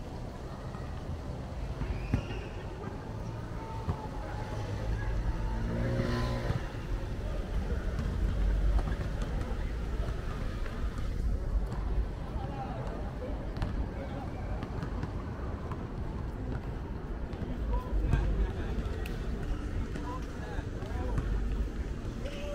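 City street ambience: a steady low traffic rumble with scattered voices of people nearby, and a vehicle passing about five to seven seconds in.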